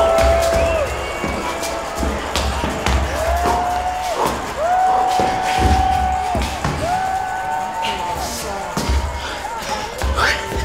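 Dance music with a pulsing bass beat and several long held notes, each sliding up at its start and dropping away at its end.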